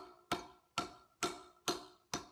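Hammer chipping at a concrete slab in steady, even blows, about five in two seconds, each with a brief ring, hollowing out a recess around a drilled hole.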